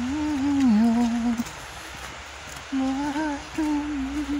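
A person humming a tune with closed lips: a first phrase of held notes that steps down, a pause of about a second and a half, then a second phrase.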